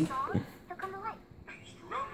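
Short, high-pitched cartoon character voices played through laptop speakers, a few squeaky sliding cries in the first second, then quieter.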